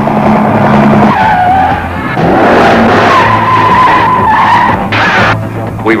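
Car tyres squealing in two long, held screeches over a loud action-music score, in a film-trailer sound mix.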